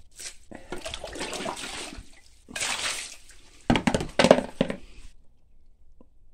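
Water poured from a plastic bucket splashing over a pile of rocks in several pours, the loudest about four seconds in, cutting off abruptly about five seconds in. The rocks are being wetted down.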